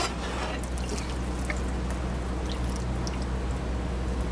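Water trickling and dripping off a freshly wet-cut ceramic tile and the wet tile saw's table, with a few small drips, over a steady low hum.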